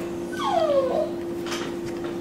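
A single short whine that glides down in pitch, with a fainter brief one after it, over a steady low hum.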